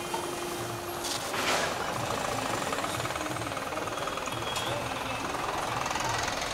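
City street traffic, with a nearby vehicle engine running in a rapid, even pulsing from about a second and a half in. A steady low tone stops about a second in.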